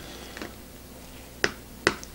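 A fork clicking against a plastic meal tray as it cuts into a pork chop: a faint click about half a second in, then two sharp clicks close together near the end.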